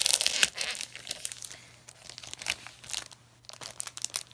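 Glossy plastic wrapping crinkling as it is pulled open by hand. The crinkling is densest in the first second, then comes in a few scattered crackles.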